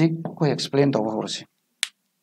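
A man speaking for about a second and a half, then a single short, sharp click near the end.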